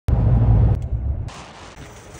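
Low rumble of road and engine noise heard inside a moving car on the highway; about a second in it drops away to a much quieter outdoor background.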